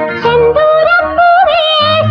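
A female playback singer's voice in a 1970s Tamil film song, holding wavering, ornamented notes over orchestral backing. A low bass line drops out partway through and comes back near the end.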